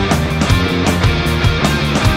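Instrumental metal mixing black metal and post-rock: distorted electric guitar over bass and a drum kit, with regular drum and cymbal hits several times a second.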